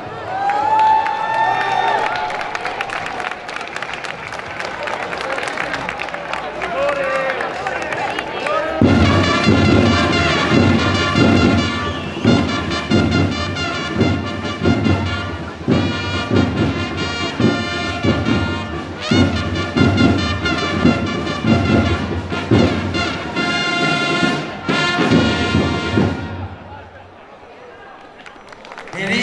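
Herald trumpets (chiarine) and drums playing a ceremonial fanfare. It starts about nine seconds in with sustained trumpet notes over steady drum beats, then stops shortly before the end.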